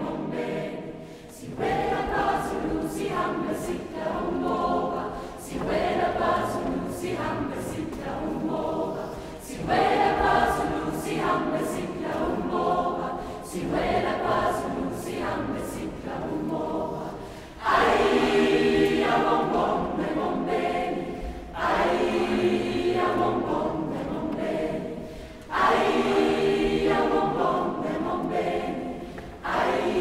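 Large mixed-voice youth choir (SATB) singing in rhythmic phrases, with fuller, louder entries about 10, 18 and 26 seconds in.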